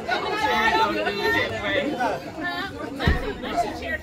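Chatter of several people talking at once, overlapping voices with no single clear speaker, and a brief low thump about three seconds in.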